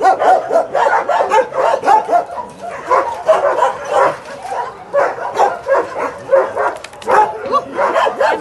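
Dogs barking repeatedly, short overlapping barks coming several times a second with no break.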